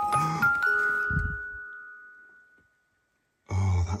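A noise-making toy doll chiming as it is touched: a few bell-like notes at different pitches ring together and fade away over about two and a half seconds.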